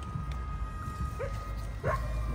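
A dog giving two short barks, one partway through and a stronger one near the end, faint under a steady high tone.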